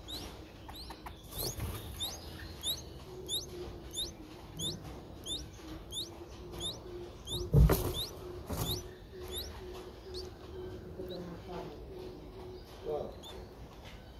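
Streak-eared Bulbul nestlings giving thin, high begging chirps, each rising quickly, about two a second, dying away a few seconds before the end. A loud thump about halfway through.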